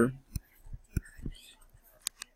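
Stylus tapping and scratching on a drawing surface while small circles are drawn: about five short, light ticks with faint scratching between them.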